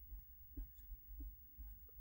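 Marker pen drawing on paper: a few faint, short strokes as lines are drawn.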